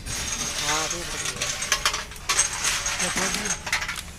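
Rapid metal clinks and clatter of steel engine parts and tools being handled, with a few louder clanks among them.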